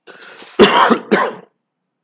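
A man coughs twice, clearing his throat: a soft breath first, then two short, loud coughs about half a second apart.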